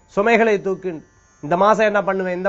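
A man speaking Tamil in two phrases, with a short pause just before the second half.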